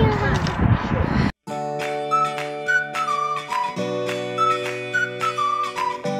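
Outdoor noise and the tail of a girl's cheerful exclamation. After a brief dropout, background music takes over: a high, flute-like melody over held chords with a light plucked rhythm, the chord changing about four seconds in.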